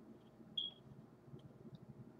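Faint room tone with a single short high-pitched tone about half a second in, and a few faint ticks.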